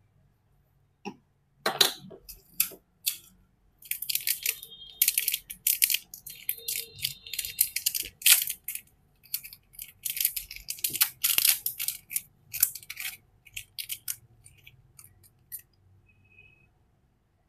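Thin clear plastic wrapping crinkling and rustling as hands unwrap small acrylic stand and keychain pieces. It comes in irregular crackly bursts from about two seconds in and thins out near the end.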